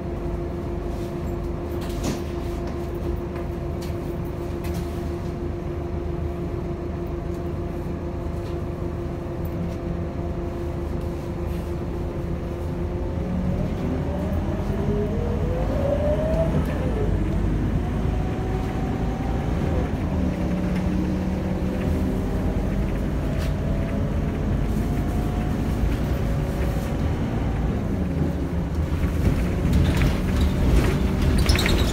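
Inside a city bus: the engine hums steadily with a low rumble, then about halfway through the engine and drivetrain whine rises in pitch and drops back twice as the bus pulls away and picks up speed, growing louder.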